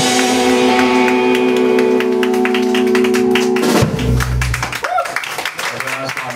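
Live rock band holding a sustained chord with cymbals ringing. About four seconds in, a low bass-and-drum hit ends it, and the sound then dies away.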